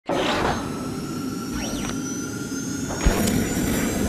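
Logo intro sting: a sustained whoosh of sound effects and music, with a short rise-and-fall sweep and a sharp hit about three seconds in.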